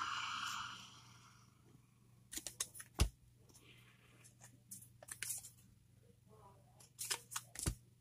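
2012 Panini Cooperstown baseball cards being flipped through by hand: faint snaps and slides of card stock in a few short clusters, the sharpest snap about three seconds in.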